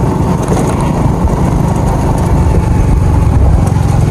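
Motorcycle engine running steadily while the bike is ridden along a road.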